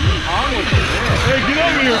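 Male voices talking and exclaiming, over a steady low hum.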